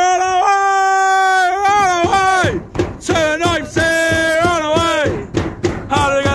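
Football supporters singing a chant in long held 'oh' notes, with a few drum beats between the phrases.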